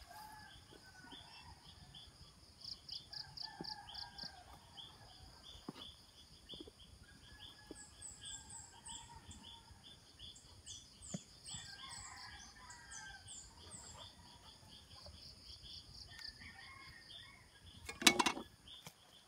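Faint rural outdoor soundscape: insects chirping in a steady repeating rhythm of about three chirps a second, with distant roosters crowing now and then.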